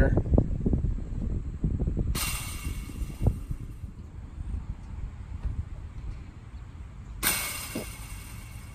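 Wind buffeting the phone's microphone in a steady low rumble, with one sharp knock about three seconds in.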